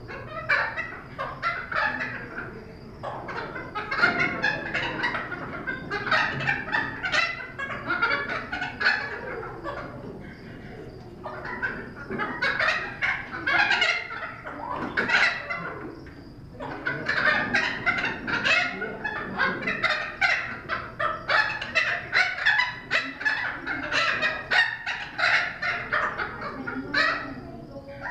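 Thick-billed parrot calling in a long, rapid run of short chattering calls, easing off briefly about ten seconds in and again just past halfway.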